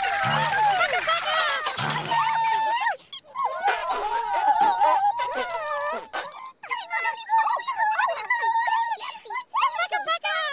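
High-pitched, wordless character voices babbling and chattering in quick, squeaky bursts, over light music for the first three seconds or so.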